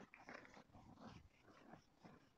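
Faint rubbing of an eraser wiped back and forth across a whiteboard in quick, uneven strokes.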